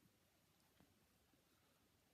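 Near silence: room tone, with one faint click a little under a second in.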